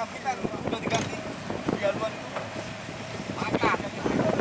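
Fishing-boat crew calling out to each other in short shouts, over the steady hum of a boat engine.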